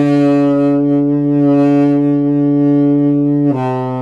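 Saxophone holding one long low note, then stepping down to a lower held note near the end.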